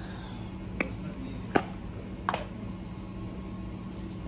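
Three sharp clicks, each under a second apart, over a low steady hum.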